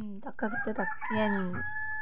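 A rooster crowing, its long steady-pitched call held through the second half, behind a woman talking.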